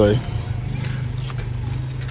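A steady low hum with a few faint, short clicks over it, after a spoken word cuts off just at the start.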